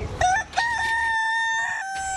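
A rooster crowing once: a short rising lead-in, then a long held note that falls away near the end.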